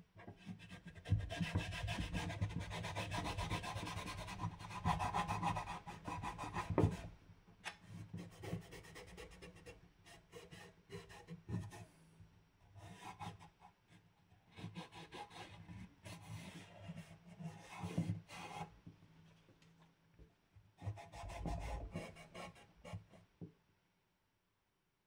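A cloth rubbing finishing oil into the surface of a wooden wine box. The wiping goes in stretches: a long spell of steady rubbing in the first seven seconds, shorter strokes on and off after that, and another spell of rubbing near the end.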